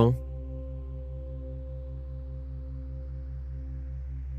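Ambient background music: a steady drone of held tones, like a singing bowl, over a low note that pulses about six times a second.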